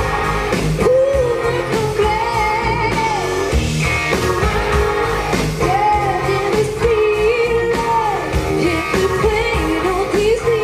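Live rock band: a woman singing lead into a microphone over electric guitars, bass guitar and a drum kit, with sustained, gliding sung notes.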